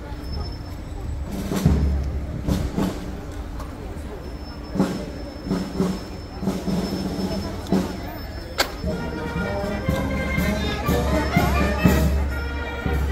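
Murmur of voices in a street crowd with scattered sharp knocks, then band music starting up about nine seconds in and growing.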